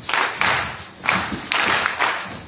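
Live gospel music with a group of performers clapping in time, roughly two claps a second.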